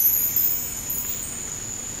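Cartoon twinkle sound effect: a glittering chime shimmer right at the start, leaving a thin steady very high ringing tone over a soft hiss.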